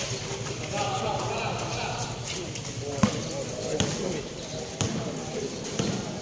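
Basketball bouncing on a concrete court, with several sharp bounces in the second half, amid voices of players and onlookers.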